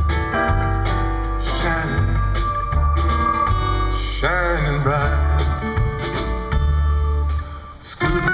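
Live blues band playing a mostly instrumental passage of the song: acoustic guitar, mandolin, electric bass, drums and organ, over a steady bass line, with a rising slide about four seconds in.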